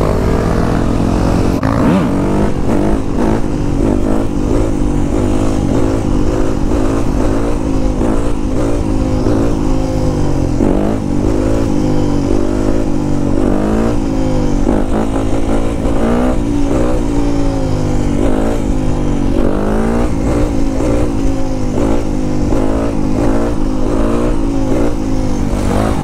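Yamaha YZ250F four-stroke single-cylinder dirt bike engine heard from the rider's seat, revving up and down over and over as the rider shifts gears and holds the front wheel up in a wheelie. Steady wind noise on the microphone runs underneath.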